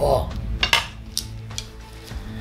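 Wooden sticks of a shaman's five-colour divination flags (obangi) clacking against each other in the hands: a few sharp clicks while the flags are handled and waved.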